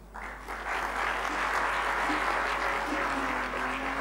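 Audience applauding, building up within the first second and then carrying on steadily.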